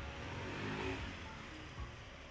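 A motor vehicle accelerating along the street, its engine pitch rising about half a second in over a steady low traffic rumble.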